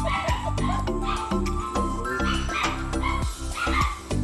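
A dog barking and yipping several times in the second half, over background music with a steady beat.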